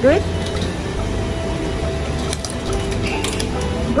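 Automatic ticket gate at a Japanese train station taking in a paper ticket: a few faint mechanical clicks past the middle and a brief high tone near the end, over a steady low hum of the station hall.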